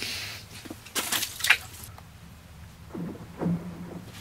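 A few short clicks and rustles of hands handling an ice-fishing rod, line and jig, the sharpest about a second and a half in, with a brief low hum near the end.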